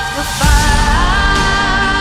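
Epic orchestral-pop song: a female singer holds one long sung note, rising slightly in pitch about a second in. A heavy low-end swell of the full arrangement enters about half a second in under the voice.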